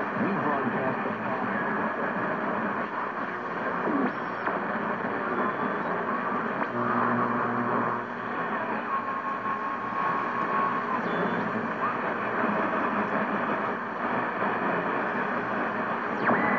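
Hammarlund HQ-100A tube communications receiver being tuned across the band: steady hiss and static from its speaker, broken by short sliding heterodyne whistles and garbled snatches of stations. A little past halfway a steady whistle holds for about two seconds.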